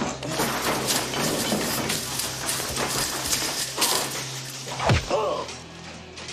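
Hands thumping on a man's chest in clumsy mock CPR: a few separate thumps over a steady noisy background hum, the clearest about five seconds in.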